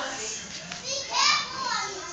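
A baby babbling in short high-pitched vocal sounds, the loudest about a second in.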